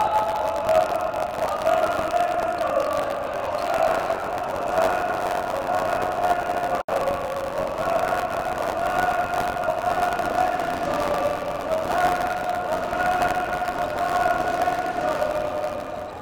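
Crowd of spectators chanting in unison in long, drawn-out sung notes that change pitch every few seconds, over general arena crowd noise.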